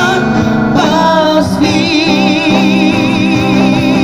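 Live busking band: male and female voices singing together over bass and acoustic guitar. From about two seconds in, a long note is held with vibrato.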